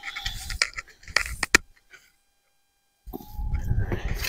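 Long-handled garden tool scraping and digging through soil and straw mulch in a wooden raised bed, with a few sharp knocks. The sound stops completely for about a second midway, then the scraping starts again.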